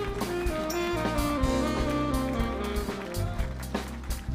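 Live band playing, with an alto saxophone carrying a stepping melody over bass and drums.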